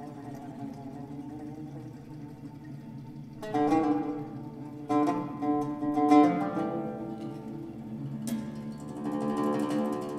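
Plucked bowl-backed lute playing in a new-music piece for oud or tanbur and electronics. It opens on sustained held tones, then plays a few sharp plucked notes and short phrases that ring on between attacks.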